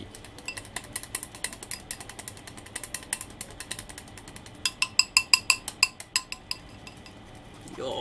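Chopsticks mixing sticky natto in a glass bowl, clicking and scraping against the glass. The clicks are irregular at first; about halfway through they turn louder and faster, about six a second, each ringing briefly off the glass.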